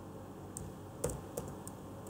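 A few keystrokes on a computer keyboard, about four sharp clicks at uneven spacing, the loudest a little after halfway.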